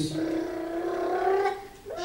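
A man's voice holding a long drawn-out vowel for about a second and a half, rising slowly in pitch, fading near the end.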